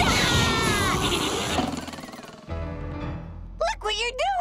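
Cartoon soundtrack: loud, dense music and effects with falling whistle-like glides, fading away after about two seconds. A quieter held chord follows, then short voice-like calls that swoop in pitch near the end.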